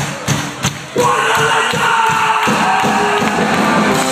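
Live Celtic punk band playing loud through a club PA, recorded from the audience: a few drum hits, then from about a second in a held, ringing chord with the crowd shouting.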